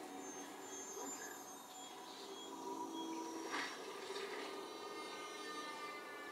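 Television soundtrack playing in a small room, heard faintly: several steady held tones at different pitches, like a sustained music score, with a soft tap about three and a half seconds in.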